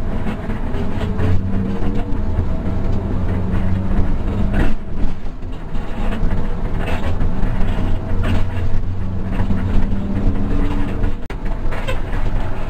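Hino RK8 260 coach's diesel engine running steadily under way, heard from inside the cabin with road noise and rattle. The engine note dips briefly about halfway, and the sound breaks off sharply near the end.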